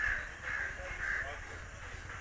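A bird calling over and over in short calls, about two a second, over a steady low rumble of street background.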